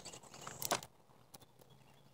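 A few faint clicks and scuffs in the first second, then near silence.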